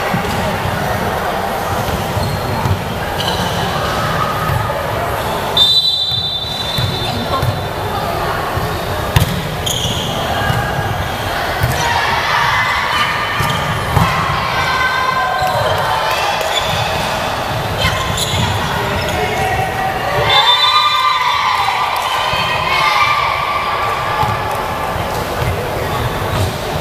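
Volleyball play in a reverberant sports hall: several sharp smacks of the ball being struck, with players' voices calling out. There is a short referee's whistle about six seconds in, and louder shouting a little after twenty seconds.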